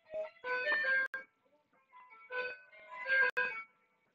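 A short electronic melody heard in brief phrases of a few held notes, about half a second each, with quiet gaps between.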